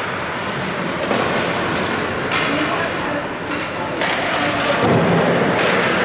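Ice hockey game sounds: sharp knocks and thuds from sticks, puck and players against the boards, several times, over indistinct shouting voices.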